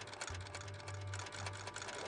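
Rapid, evenly spaced mechanical clicking over a low steady hum.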